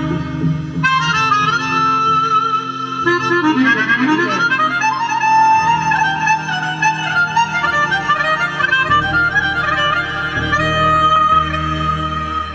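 Instrumental interlude of a Rajasthani bhajan: a keyboard synthesizer plays the melody over sustained bass notes that change every second or two.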